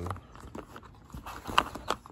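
A few light knocks and clicks of plastic LED light strips and their cables being handled over a cardboard box, bunched together in the second half.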